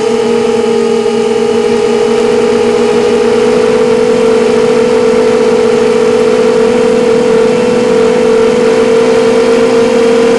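Racing quadcopter's four Lumenier FX2000kv brushless motors spinning Gemfan 5x3 props in steady low flight: a loud, steady whining drone of several close pitches beating against each other, stepping up slightly in pitch about four seconds in.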